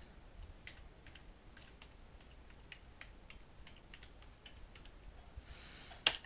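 Faint computer keyboard typing: irregular key clicks, about two or three a second, as a file name is typed in.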